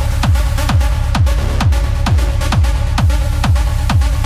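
Hard techno: a four-on-the-floor kick drum at a little over two beats a second, each kick dropping in pitch, under busy hi-hats and percussion.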